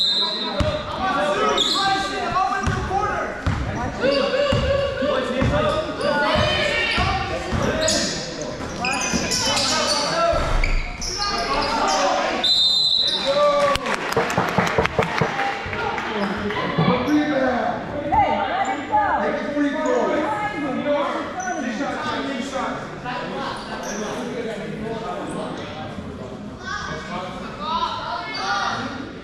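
A basketball is dribbled on a gym floor, with repeated low bounces over roughly the first twelve seconds. Voices of players and spectators echo in the hall throughout, and a brief high whistle sounds about twelve seconds in.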